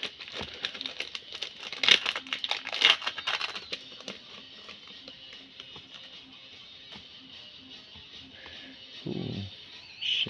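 Foil booster-pack wrapper crinkling and rustling as it is torn open and the cards are slid out, loudest about two and three seconds in, over quiet background music that continues alone once the crinkling stops.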